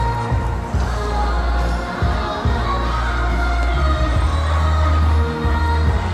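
Tibetan guozhuang dance music played over loudspeakers, with a heavy, steady bass line. Crowd voices and cheers rise over it.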